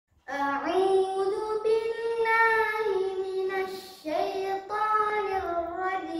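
A boy reciting the Quran in melodic qirat style, holding long, slowly bending notes. He breaks off briefly about four seconds in to take a breath, then begins a new phrase.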